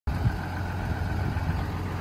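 A 2011 Ram 5500's 6.7 Cummins diesel idling steadily with a low hum.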